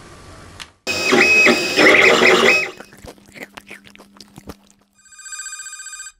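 A run of sound effects: a steady hiss that cuts off, then a loud dense burst with a high steady tone lasting about two seconds, then a string of sharp clicks over a low hum. Near the end comes a telephone-like electronic ring, pulsing rapidly.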